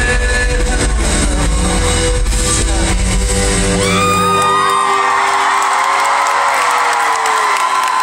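Live pop band music over a concert sound system, the bass cutting out about halfway through as the song ends; the audience then cheers, whoops and screams.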